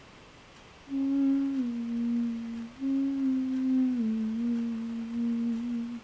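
A person humming with closed lips: two low held notes, each phrase stepping down in pitch, with a short break between them.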